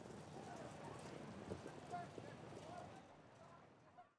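Faint hoofbeats of standardbred harness horses racing at speed, pulling sulkies, easing off slightly over the last second.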